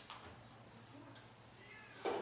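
Faint dry-erase marker strokes on a whiteboard: light scratching as the marker is drawn across the board, with a brief faint squeak near the end.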